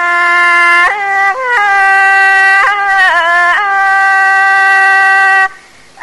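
Thai classical music: a single melody line of long held notes that steps between pitches, with a wavering, bending ornament in the middle. It stops briefly near the end.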